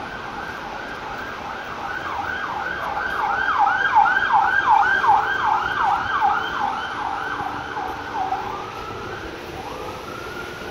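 Emergency vehicle siren in street traffic. A slow wail switches a couple of seconds in to a fast yelp, about three sweeps a second. The yelp is loudest in the middle, then fades as the siren goes back to a wail near the end.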